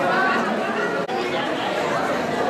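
Crowd chatter in a large hall: many people talking at once, a steady hubbub of overlapping voices, with a momentary dropout about a second in.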